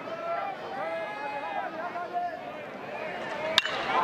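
Ballpark crowd murmur with voices calling out. About three and a half seconds in comes a single sharp crack of a metal college bat striking the pitch for a home run.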